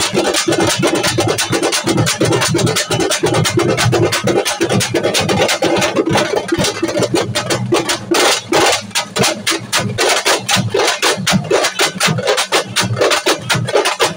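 Loud, distorted music with rapid, evenly spaced drum beats, the beats standing out more sharply in the second half.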